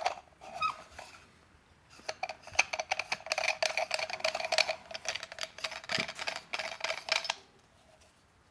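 OE Lido OG hand coffee grinder's parts being screwed together by hand: a few clicks, then from about two seconds in a run of rapid clicking and scraping as the body is turned on its threads, stopping about a second before the end.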